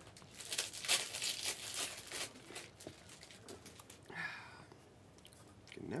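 Foil trading-card pack wrappers crinkling as they are handled. A dense run of crackles comes in the first two seconds, then fainter, sparser rustles.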